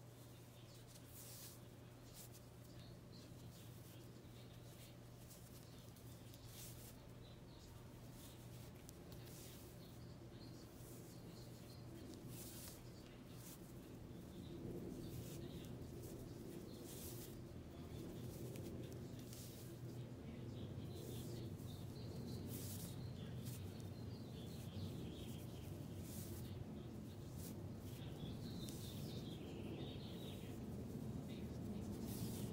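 Faint rustling and scraping of thick twisted macrame cord being handled and knotted, with short scratchy swishes over a steady low hum. The handling noise grows louder about halfway through.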